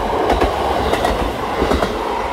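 KiHa 40 single-car diesel railcar passing through a station at speed without stopping: a running rumble with irregular clattering of its wheels over the rail joints. No horn is sounded.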